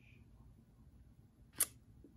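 Near silence broken by a single sharp click about one and a half seconds in.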